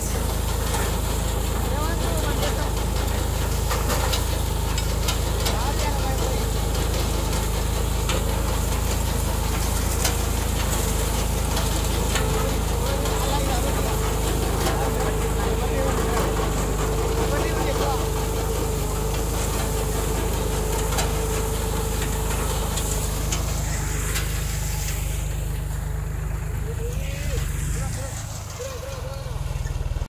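Tractor diesel engine running steadily under load while pulling a tractor-mounted groundnut digger through the field. The rumble drops off briefly near the end.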